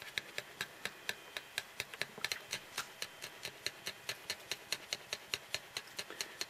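Working cocker spaniel bitch panting just after giving birth, an even run of short breaths about four a second. Her owner takes the panting as a sign that another puppy may still be waiting to come.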